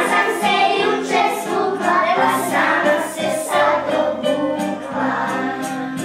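A children's action song: a group of voices singing over instrumental backing with steady held notes.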